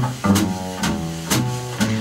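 Live jazz band playing between sung phrases: an upright double bass plucks low notes that step from one pitch to the next about twice a second, under piano chords and regular light drum strokes.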